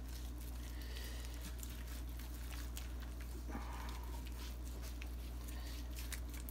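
Gloved hand rubbing a yellow mustard slather over a raw brisket: faint, soft smearing sounds over a steady low hum.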